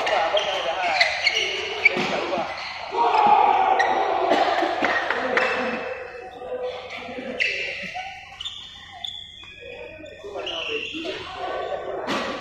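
Badminton rackets striking a shuttlecock in a doubles rally: a quick series of sharp hits, busiest in the first half, echoing in a large sports hall. Players' voices are heard among the hits.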